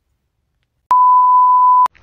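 A single steady electronic beep, one even tone lasting about a second, that starts abruptly about a second in and cuts off just as abruptly.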